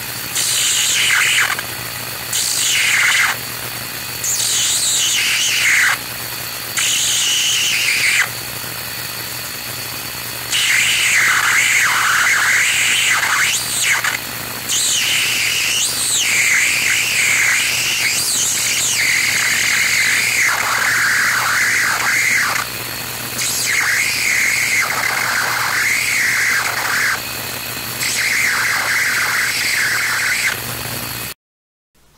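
Tesla coil sparking to a nearby wire, the spark making a high squealing, warbling tone that slides up and down in pitch. It cuts in and out in short bursts for the first eight seconds, then runs in longer stretches. The warble comes from feedback of an ultrasonic transducer's vibration into the coil, and a steady low hum runs underneath.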